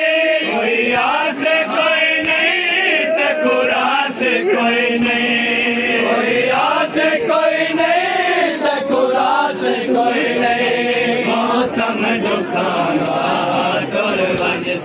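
A group of men chanting a Muharram lament (noha) together, one continuous loud sung chant whose melody rises and falls.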